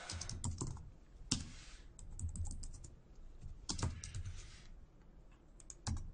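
Typing on a computer keyboard: irregular runs of key clicks, with a few louder keystrokes spread through.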